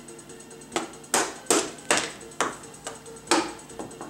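Toy electronic drum pad set being hit with a drumstick: about eight sharp electronic drum and cymbal hits, unevenly spaced, starting about a second in. Faint background music plays under them.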